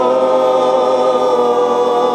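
Music: a choir of voices holding one long, steady chord at the end of a 1970s rock song.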